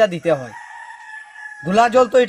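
A rooster crowing in the background: one call of about a second, quieter than the man's speech on either side.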